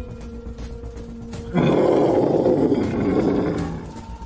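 A held low musical drone note, then about a second and a half in a sudden loud roaring sound effect that lasts about two seconds and fades away.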